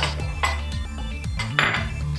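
Two ceramic bowls being separated and set down on a stone countertop: a light knock at the start, another about half a second in, and a short scrape near the end, over soft background music.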